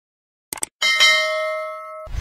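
A quick pair of clicks, then a bright bell ding just before a second in that rings on and slowly fades: the mouse-click and notification-bell sound effect of a subscribe-button animation.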